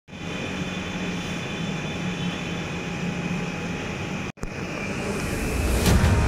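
Steady hum and hiss of indoor room ambience, broken by a brief dropout about four seconds in; music starts to come in at the very end.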